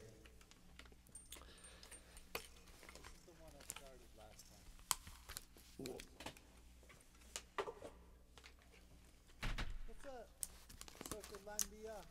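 Faint handling noise of electric guitars being swapped: scattered clicks and small knocks as the guitar is lifted off and set aside, with one heavier low knock about nine and a half seconds in, over a steady low hum.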